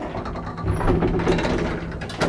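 Schindler elevator car doors sliding open: a loud clattering mechanical rattle from the door operator and telescoping door panels, building in the second half, over a steady low hum.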